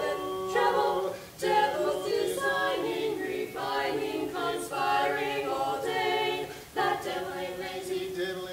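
Four voices, three women and a man, singing a cappella in harmony, with short breaks between phrases.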